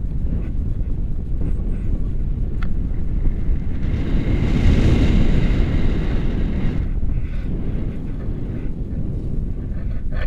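Wind buffeting an action camera's microphone in flight, a steady low rumble that grows louder for a few seconds in the middle, with a faint high whistle over it.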